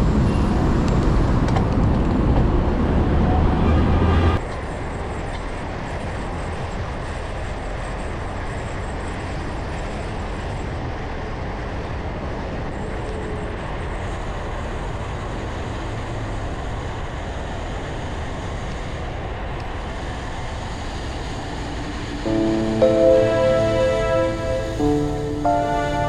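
Steady traffic and wind noise heard from a bicycle riding in city traffic, louder for the first four seconds and then dropping suddenly to a quieter steady rush. Background music with clear held notes comes in about two seconds before the end.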